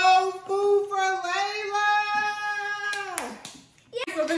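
A child's voice singing long held notes in a sing-song tune for about three seconds, the pitch sliding down as it stops, with a couple of sharp taps just before the end.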